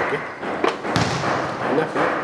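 A basketball thudding on a gym floor a few times, sharp hits a fraction of a second to a second apart, with people's voices in the hall.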